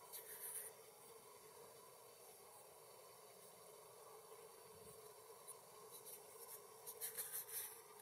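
Near silence with faint, scratchy rustles: a short cluster at the very start and another near the end.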